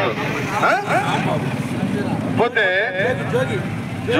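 A man speaking emphatically in Telugu into a handheld microphone, with a steady low hum underneath.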